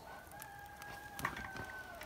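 A rooster crowing faintly: one long call held at a steady pitch, dropping slightly at the end. A few light clicks come about a second and a quarter in.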